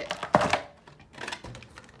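A single sharp knock about a third of a second in, followed by fainter handling noises.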